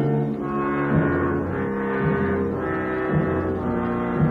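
Orchestral television score from 1960: sustained low chords, with a heavy accent about once a second.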